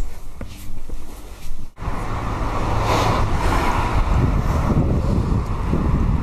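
Street ambience outdoors: wind buffeting the microphone over road traffic noise, a steady rumble and hiss. It starts abruptly about two seconds in, after a short stretch of quieter indoor room sound.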